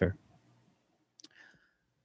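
A man's voice ending a sentence, then a pause with a short, faint click and a brief rustle a little over a second in.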